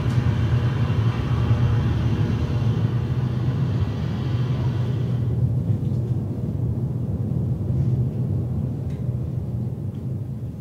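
A low, steady rumble, with a hiss over it that dies away about five seconds in.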